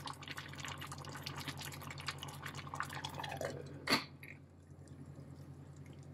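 Cubed pumpkin simmering in sugar syrup in a stainless steel saucepan, with many small bubbling pops while a metal spoon stirs it. A single sharp metallic clink comes about four seconds in, then the bubbling goes quieter. A low steady hum runs underneath.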